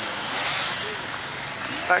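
Distant off-road motorcycle engines droning faintly, slowly dying away.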